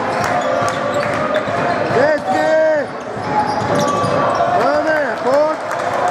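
A basketball being bounced on a hardwood court in a large hall, with repeated sharp knocks over a noisy crowd background. Short rising-and-falling squeals come in twice, about two and five seconds in.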